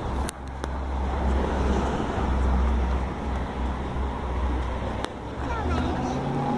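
Steady low rumbling outdoor background noise, with a sharp click near the start and another about five seconds in.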